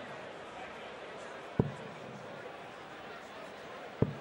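Steel-tip darts thudding into a bristle dartboard: one sharp thud about one and a half seconds in and another right at the end, over a steady background hum.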